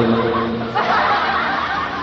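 A man chuckling softly into a close microphone.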